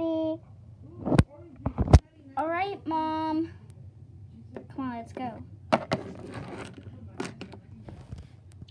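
Small plastic toy figures being handled and knocked on a tabletop, with two sharp clacks less than a second apart. A child makes wordless vocal sounds in between.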